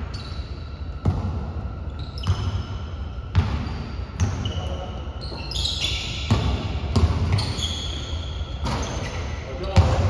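A basketball bouncing on a hardwood gym floor in irregular single bounces, each with a short echo off the hall. Short high sneaker squeaks come in between, busiest in the second half.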